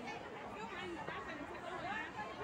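Several people talking at once: overlapping voices chattering, no single speaker clear.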